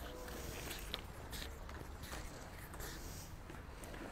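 Faint scuffs and small knocks of a flexible vacuum hose being handled and gathered up by hand.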